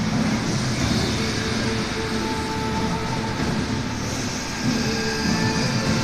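A film soundtrack playing through speakers in the room: a steady low rumble with a faint held tone that comes and goes.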